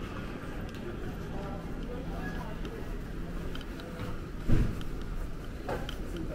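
Airport concourse crowd ambience: indistinct voices of passing travellers over a steady hum, with one sharp thump about four and a half seconds in.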